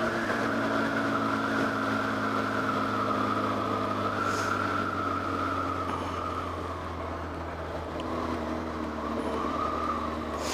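2005 Honda CB900F Hornet's inline-four engine running steadily under way, with wind and road noise. Its note dips slightly in the first second, then holds steady.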